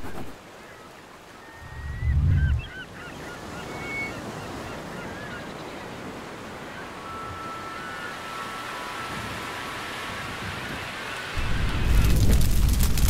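Steady surf and wind ambience with birds calling: quick repeated chirps about two seconds in and longer held calls later. A loud low boom about two seconds in is the loudest sound, and a heavy low rumble sets in near the end.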